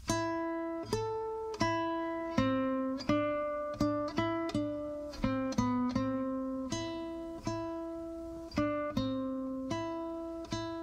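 Solo classical guitar playing a slow line of plucked notes, each one ringing out and fading. The notes come closer together in the middle.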